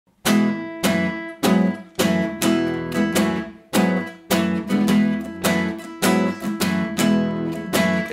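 Nylon-string classical guitar strummed in a steady rhythm, about two chord strokes a second, each with a sharp attack and ringing notes; it starts about a quarter-second in.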